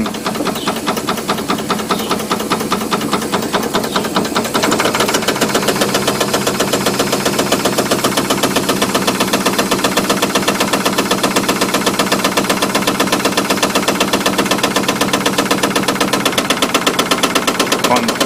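Stuart 5A model steam engine running with a fast, even beat, growing louder about four to five seconds in, while water is fed to its coal-fired boiler.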